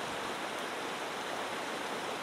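Shallow rocky mountain stream rushing over stones and small rapids: a steady, even rush of water.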